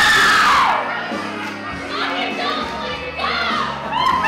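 Women cheering and shouting, with one loud high yell falling in pitch in the first second and shorter whoops after it, over background music.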